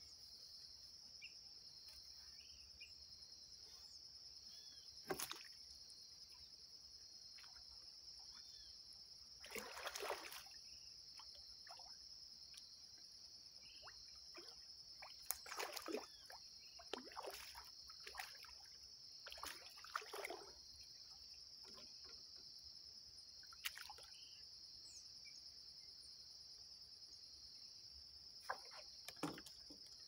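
Several short splashes and sloshes of water as a hooked tilapia thrashes at the surface and is lifted out on a fishing line. Under them runs a steady high-pitched drone of insects.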